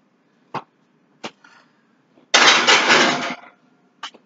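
Two light knocks, then about a second of loud scraping rattle: a baking pan being slid in under the oven's broiler.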